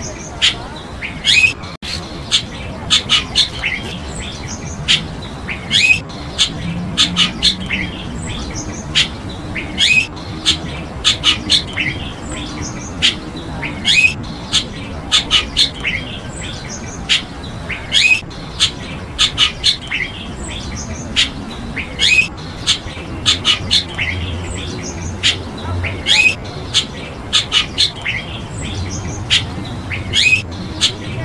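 Birds calling: many short, sharp chirps and brief rising notes in quick, irregular succession, over a steady low background rumble.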